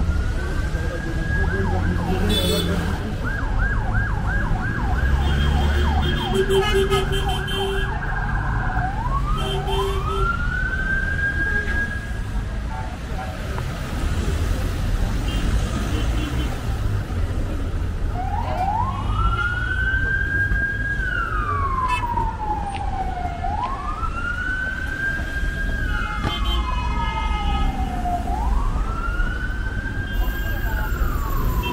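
Emergency vehicle siren sounding over busy street traffic: a fast warbling yelp for the first several seconds, then a slow wail that rises and falls every four seconds or so.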